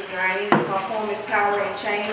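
Indistinct voices in a large, echoing hall, with one sharp knock about half a second in, as a plastic chair is knocked on the floor when someone sits down.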